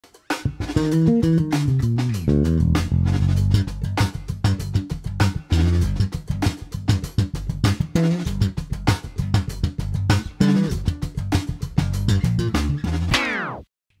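Electric bass played slap-style in a funk groove, with thumb slaps and finger pops giving sharp percussive attacks over low octave notes, against a drum track. Near the end the bass dives down in pitch and cuts off.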